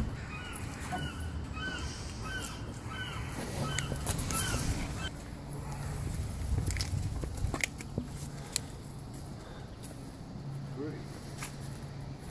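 A bird calling in a quick series of short, identical notes, about two a second, which stops about three and a half seconds in. After it come low rumbling handling noise and a few sharp clicks.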